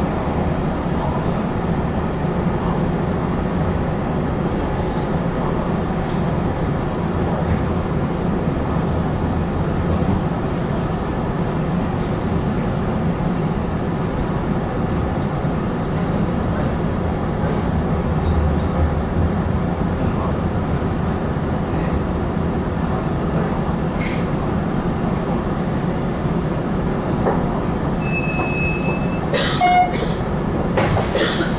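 Running noise of a Hanshin 5550 series train heard from inside the cab, a steady rumble of wheels on rail as the train slows from about 60 km/h almost to a stop. Near the end a brief high-pitched tone and a few clicks.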